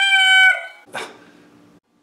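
A high-pitched voice-like call holding one steady note for about half a second, then a short breathy rush about a second in.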